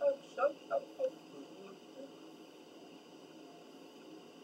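A woman's voice, a few short mumbled syllables in the first second, then quiet room tone with a faint steady hiss.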